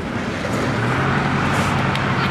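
Engine of a small tourist road train running as it drives past, a steady low hum that gets louder about half a second in.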